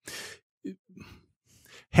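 A man breathing in a pause between phrases: a soft exhale at the start, faint small mouth sounds in the middle, and a short intake of breath just before he speaks again.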